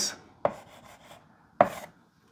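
Chalk striking and scratching on a blackboard while writing: two sharp taps about a second apart, with fainter scratchy strokes between them.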